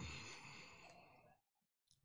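A man's long, breathy exhale that starts sharply and fades away over about a second and a half, a reaction to the burn of the super-hot One Chip Challenge pepper chip.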